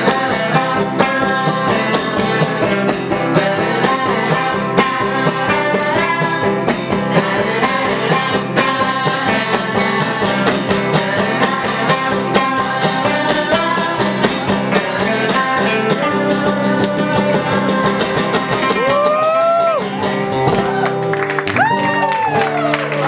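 A band playing a song with strummed acoustic guitars and singing, in a steady rhythm. Near the end a couple of notes slide up and back down.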